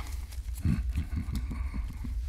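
A man's low, closed-mouth "mm" running into a deep chuckle, with a few light clicks of playing cards being handled and a steady low hum underneath.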